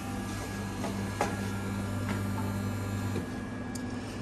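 Eversys Enigma super-automatic espresso machine pulling a shot, its pump giving a steady low hum that cuts off about three seconds in as the extraction finishes. A couple of light clicks come from the machine.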